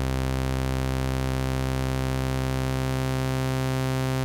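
Bitwig Polysynth oscillator holding one steady low note with its waveshape set fully to sawtooth, sounding its full series of odd and even harmonics.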